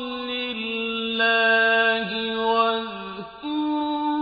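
A man's voice reciting the Quran in a slow, melodic chant, holding long notes that slide down at the end of each phrase. There is a brief break for breath about three seconds in, then a higher held note.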